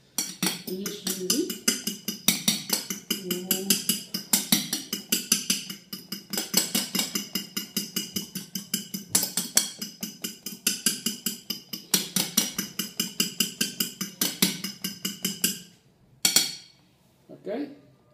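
A metal fork beating eggs in a ceramic bowl, clinking against the bowl's sides in a rapid, even run of strokes that stops abruptly about 16 seconds in.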